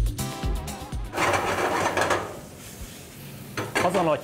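Background music with a steady beat stops about a second in. Then a frying pan of pesto-coated duck and sun-dried tomato on a gas range gives a short burst of cooking noise that fades, and a few sharp pan clatters come near the end.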